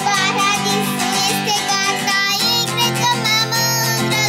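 A child's voice singing long, wavering notes without clear words over an instrumental accompaniment with steady held low notes.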